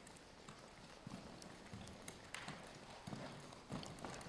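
Faint, soft hoofbeats of a horse stepping round in a slow western spin on sand arena footing: about five muffled thuds at an uneven pace as it crosses its legs over.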